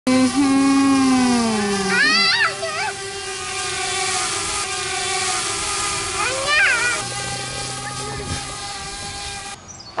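DJI Mavic Air quadcopter drone's propellers humming, several steady tones together, the pitch dropping over the first two seconds and then holding. Short voice sounds come through twice, at about two and six seconds in.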